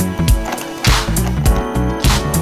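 Background music with a steady beat: sharp drum hits about twice a second over a bass line.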